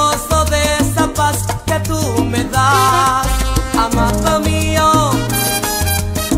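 Salsa music in an instrumental passage without singing: a repeating bass line under percussion and sliding melodic lines.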